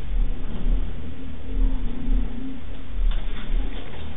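Very deep bass from a film soundtrack played loud through a home-built tapped-horn subwoofer with a Dayton 12-inch dual-voice-coil driver. It comes as a string of heavy, uneven low pulses about every half second to a second, over a steady low rumble.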